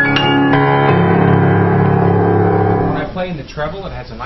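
Kawai KG2 baby grand piano played in sustained chords with a full bass, a few high notes near the start and a new chord struck about a second in, held until the playing stops about three seconds in. The piano is a little out of tune, as a piano with brand-new strings tends to go.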